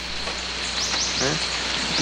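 Steady outdoor hiss, with three quick rising high chirps a little under a second in and a short low vocal murmur just after.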